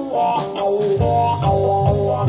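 Live blues-rock band playing an instrumental passage: an electric guitar with a Bigsby vibrato tailpiece plays a melodic line over bass guitar and a drum kit keeping a steady beat.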